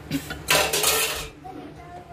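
Steel ladle clinking and scraping against the side of an aluminium cooking pot: a short clink, then a longer scrape of nearly a second.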